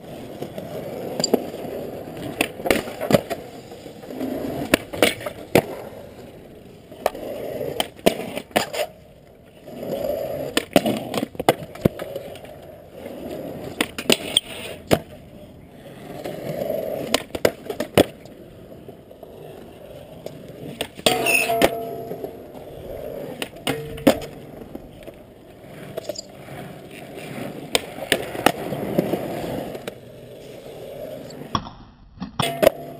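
Skateboard wheels rolling over concrete, broken by frequent sharp clacks of boards popping, landing and crossing cracks.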